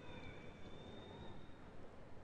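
Faint ice-rink room noise: a low, even background hiss with a thin, steady high-pitched tone that fades out about a second and a half in.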